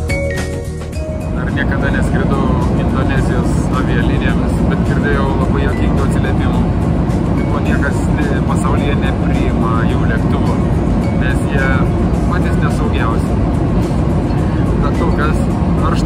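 Steady roar of a jet airliner's cabin in flight, with indistinct talking over it. Music fades out in the first second or so.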